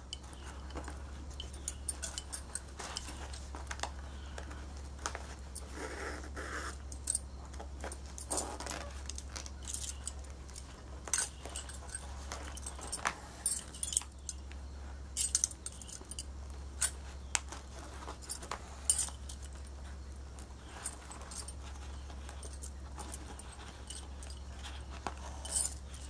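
Stacks of bangles on both wrists clinking and jingling in short irregular clicks as the hands pull needle and thread through the fabric, over a steady low hum.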